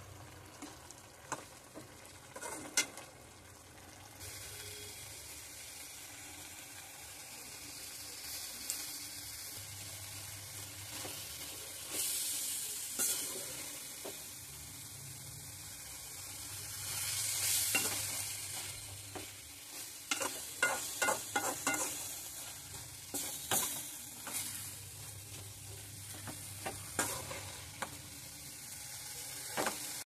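Chilli chicken gravy sizzling in a metal pan while a slotted steel spatula stirs it, scraping and clicking against the pan. The sizzle rises about four seconds in and swells a few times, with a quick run of spatula scrapes and clicks past the two-thirds mark.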